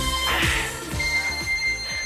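Electronic dance background music with a steady kick drum at about two beats a second. A long, steady high beep comes in about a second in, the kind an exercise interval timer gives as its countdown runs out.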